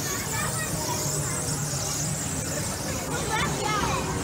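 Suspended kiddie-ride cars rolling along an overhead steel track, giving a steady high-pitched squeal. Chatter and children's voices rise briefly near the end.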